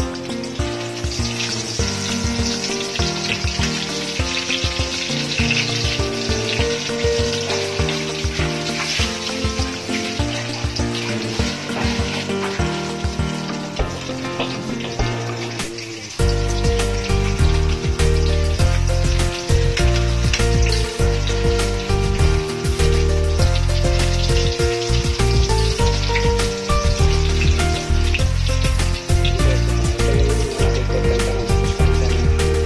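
Eggplant omelette sizzling as it fries in oil in a pan, under background music whose bass gets much heavier about halfway through.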